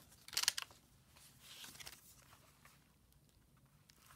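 Paper and card pages of a handmade journal rustling as they are turned by hand: a brief rustle about half a second in, then fainter handling.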